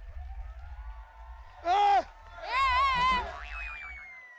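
Cartoon-style comedy sound effects over a background music track: a short falling tone, then a wobbling boing, then a thin whistle that glides slowly downward near the end.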